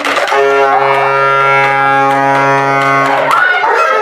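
Wind instruments, a saxophone among them, holding one long steady chord for about three seconds, ending shortly before the end, with brief voices at either end.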